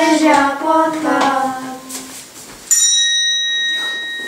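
A child singing a short sung line that ends about two seconds in. About a second later a small bell is struck once, and its clear ring lingers and fades slowly.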